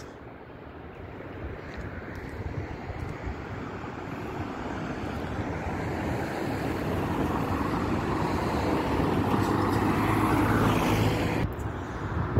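Road traffic noise: a steady rush of tyres and engines that grows gradually louder over about ten seconds, then drops away suddenly near the end.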